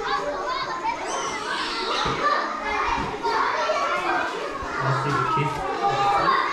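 Many children's voices chattering and calling out at play, an overlapping babble with no single voice standing out.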